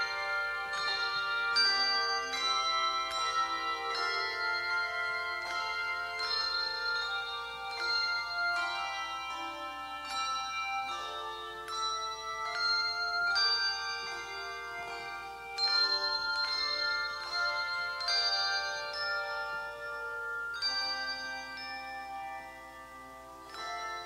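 A handbell choir playing: bells struck in chords and melody lines, each note starting sharply and ringing on over the next. It softens briefly near the end.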